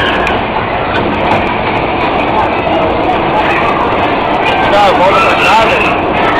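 Bumper-car ride in motion: a loud, steady rumble of the cars running, with voices calling out over it and a wavering cry about five seconds in.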